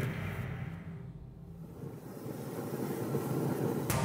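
Film trailer soundtrack: a low sustained drone with a dark rumble that sinks a little and then swells, ending in a sharp hit near the end.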